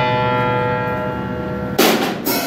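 Upright piano strings ring on from a many-note chord struck just before, fading slowly. Near the end a sharp drum-kit hit cuts in.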